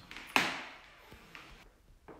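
A single sharp knock or tap with a short echo that dies away over about a second, followed by a faint click.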